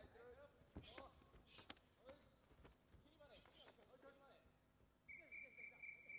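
Faint karate tournament-hall sound, mostly near silence: distant shouting voices and a few soft knocks. A steady high tone starts about five seconds in.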